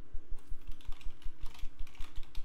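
Typing on a computer keyboard: a quick, irregular run of keystrokes starting about a third of a second in, spelling out a word.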